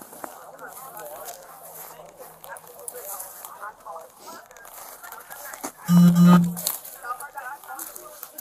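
Faint, indistinct voices murmur in the background. About six seconds in comes the loudest sound, a short low buzzing tone that lasts under a second.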